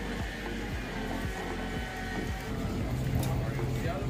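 Busy street ambience: indistinct crowd chatter and music playing, over the low hum of a vehicle that grows steadier about three seconds in.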